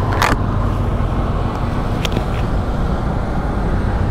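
Yamaha MT-15's single-cylinder engine running steadily while riding at road speed, mixed with wind and road noise, with a short rush of noise just at the start.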